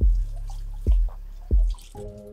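Background hip-hop beat with no voice over it: three deep bass-drum hits, each sweeping quickly down in pitch, over a steady low bass hum.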